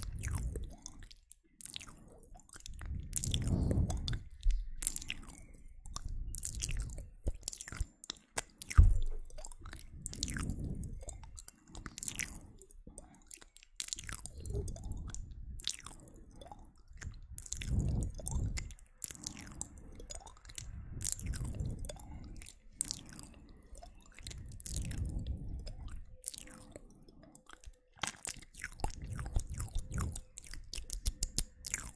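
Close-miked ASMR mouth sounds: rapid wet clicks and smacks of lips and tongue, with softer low swells about every three and a half seconds. One sharp thump about nine seconds in is the loudest moment.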